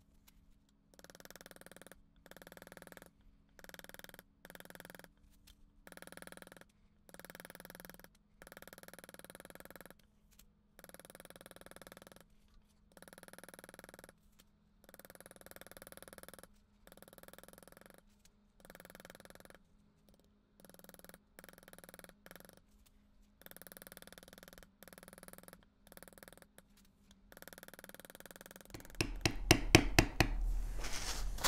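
A faint steady sound comes and goes in short stretches with silent gaps. About a second before the end comes a quick run of sharp taps: a maul striking a steel beveler to bevel the cut lines of tooled leather.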